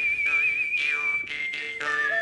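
Live music from a small ensemble: a single high, wavering melody note held for over a second, then stepping down in pitch twice, over lower sustained notes.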